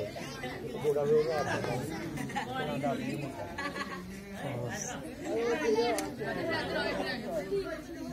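Several people talking at once: indistinct, overlapping chatter of voices.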